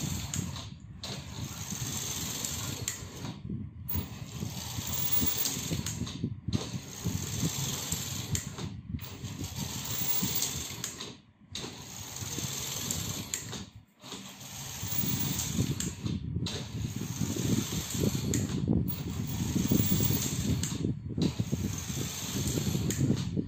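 Motor-driven knitting machine carriage clattering along the needle bed, pulled by a DC motor under joystick control. The clatter stops briefly about every two and a half seconds.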